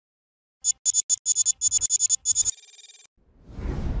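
Electronic audio logo sting for Sportradar: a quick run of about a dozen short, high blips, then a brief held high tone that cuts off suddenly, followed by a swelling whoosh near the end.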